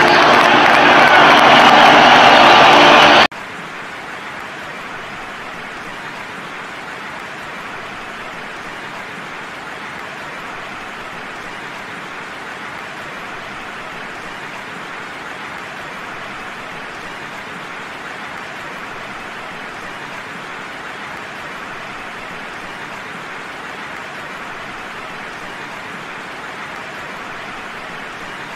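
Music with a cheering stadium crowd for about three seconds, then a sudden cut to a steady, even wash of crowd noise that holds without change.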